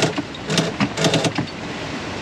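Sheet winch on a sailboat being cranked with a winch handle to trim in the headsail, ratcheting in repeated short runs, over a steady rush of wind and water.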